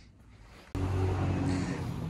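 Engines of oval-track race cars from a racing broadcast playing in the background, a steady engine drone that cuts in suddenly about three-quarters of a second in after a moment of near quiet.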